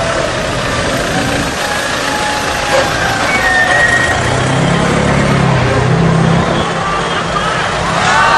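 Street noise from a convoy of trucks: engines running, with the voices of people on the street mixed in. A low engine hum stands out about halfway through.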